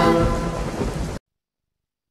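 The tail of a TV show's intro jingle: a held musical chord layered with a rain and thunder sound effect, fading and then cutting off abruptly about a second in, leaving silence.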